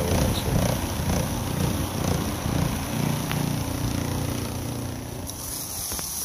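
Trinity Spider carpet agitator running, its motor giving a steady low drone as its grout brushes scrub pre-spray into a commercial floor mat. Near the end it gives way to a hose nozzle spraying water onto the mat with a steady hiss.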